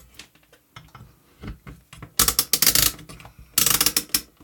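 Rotary range selector of an AMECaL ST-9905 digital multimeter being turned, clicking through its detents as it is set to continuity: a few scattered clicks, then two quick runs of clicks, about two seconds in and near the end.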